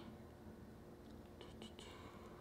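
Near silence: room tone, with a few faint soft rustles or ticks in the second half.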